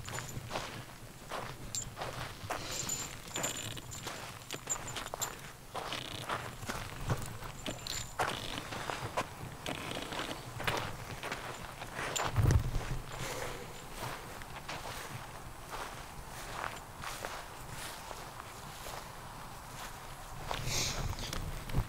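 Footsteps of people walking at a steady pace over a sandy dirt path and grass, with rustle from the hand-carried camera. One louder thump comes about twelve seconds in.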